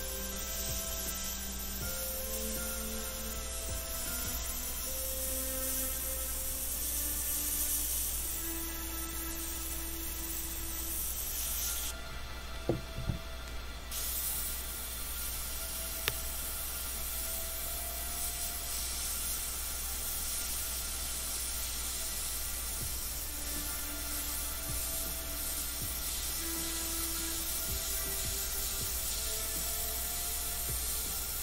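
Gravity-feed airbrush hissing steadily as it sprays paint, the air cutting off for about two seconds near the middle, when a couple of light knocks are heard. Soft background music plays throughout.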